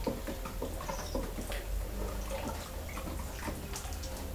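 Liquid glaze being stirred in a plastic bucket with a wooden stick: soft sloshing with irregular light taps and scrapes of the stick against the bucket.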